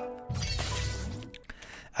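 Logo sting sound effect: held synth tones, then about a third of a second in a sudden crash-like noisy hit over a low rumble, which dies away by about a second and a half.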